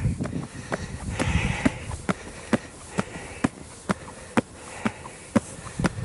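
Footsteps on concrete steps, a sharp even step about twice a second.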